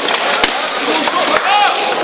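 Knocks and clashes of weapons striking steel armour and shields in armoured melee combat, with one sharp strike about half a second in. A voice shouts briefly near the end.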